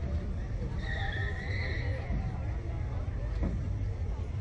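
Steady low outdoor rumble with faint voices in the background; about a second in, a high-pitched squeal holds for just over a second, its pitch rising slightly.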